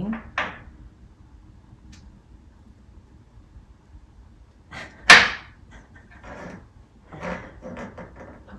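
A single sharp knock about five seconds in: a chess piece being batted around by a cat. Faint, short rustling noises follow.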